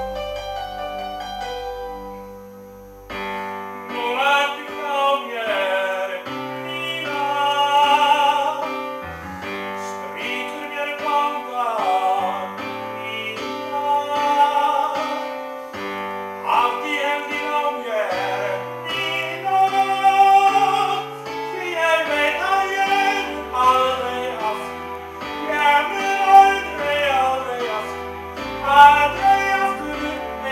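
A male tenor sings a pop ballad in full, unamplified operatic voice over a recorded keyboard backing track. The backing plays alone at first, and the voice comes in about three seconds in.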